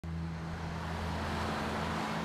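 Road traffic: cars driving past on a multi-lane street, a steady rush of tyre and engine noise with a low, steady hum beneath it.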